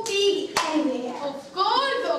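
A young performer's voice speaking, with a single sharp snap about half a second in.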